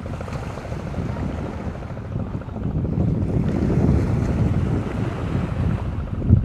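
Wind buffeting the camera microphone: an uneven, low rumbling that gets louder about halfway through.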